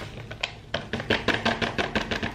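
A plastic Coffee-mate creamer pouch crinkling and crackling as it is tipped and shaken to pour the powder into a plastic container, with a dense, irregular run of sharp crackles from about half a second in.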